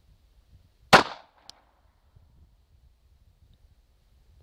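A single shot from a Glock 42 pistol in .380 ACP about a second in, with a short ringing tail. A small sharp tick follows half a second later.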